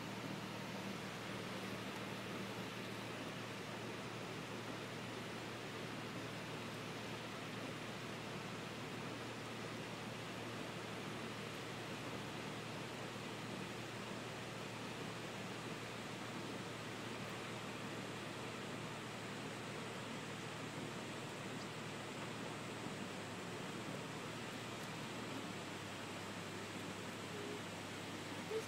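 Steady, even rush of heavy rain and floodwater flowing across a road, with a faint low hum underneath that shifts slightly near the end.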